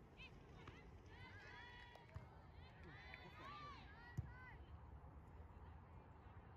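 Faint, distant shouts and calls from players across a soccer field, with a single dull thud about four seconds in.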